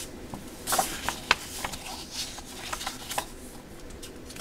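Sheets of Kaisercraft patterned scrapbook paper being lifted and turned over by hand, rustling and sliding against each other, with several sharp paper snaps and taps.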